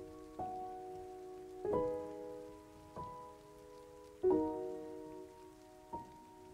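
Solo piano playing slow, soft chords, five struck in turn about every second and a half, each left to ring and fade.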